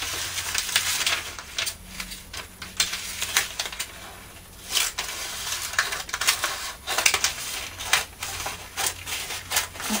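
Scissors cutting through clear cellophane florist's wrap, with irregular snips and the plastic crinkling and crackling as it is handled; a louder rustle comes near the middle.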